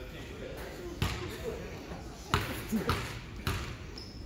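A basketball bouncing on a gym floor: four sharp bounces, the last three about half a second apart, each ringing briefly in the large hall.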